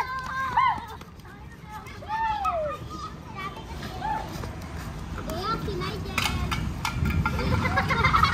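Children's high voices calling out while they play, loudest near the start and again about two seconds in, over a steady low rumble of outdoor background noise.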